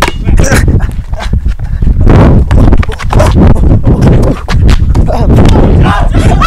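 Basketball bouncing on a concrete driveway, with repeated sharp thumps and sneaker steps picked up close and loud over a heavy low rustle. A few words are spoken.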